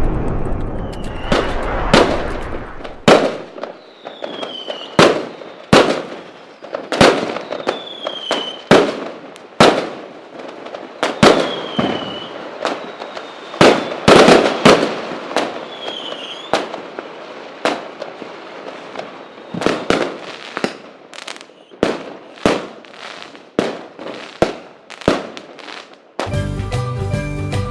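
Backyard fireworks going off: a fast, irregular run of sharp bangs and cracks, with several short whistles that fall in pitch.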